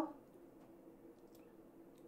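Quiet, with a faint steady hum and a couple of faint clicks about halfway through as a diamond cuticle bit is fitted into an e-file handpiece.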